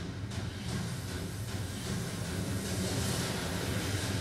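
Trailer soundtrack: a low sustained drone that slowly builds, with a rushing whoosh swelling over it past the middle.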